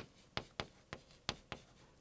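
A stick of chalk writing on a chalkboard: a quick, uneven run of sharp taps and short scrapes as each stroke of the characters goes down, about three or four a second.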